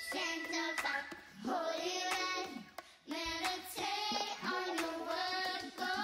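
A woman singing a gospel song over sparse backing music, with the drums out; her phrases run about a second each, with a brief gap near the middle.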